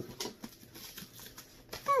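Quiet room noise with a few faint clicks, then a woman's hummed "hmm" sliding down in pitch at the very end.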